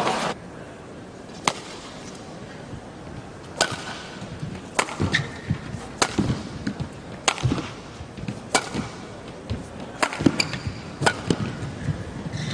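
Badminton rackets striking a shuttlecock in a rally: about eight sharp cracks, roughly one every second or so, over a faint background.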